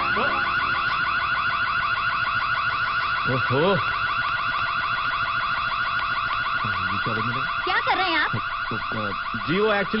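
Electronic alarm warbling loudly and continuously in a fast repeating pulse, set off by a short circuit. Brief voice sounds break in over it a couple of times.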